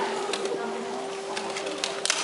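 Audience chatter in a theatre, with a steady held tone underneath and a few sharp clicks scattered through.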